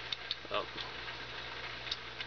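A few faint, light clicks of a plastic 360 camera and a 3D-printed headband mount being handled and fitted together, over a steady low hum.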